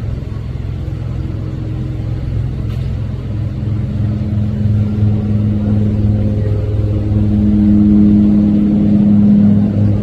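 A steady, low-pitched mechanical drone, like a running motor, growing louder through the second half.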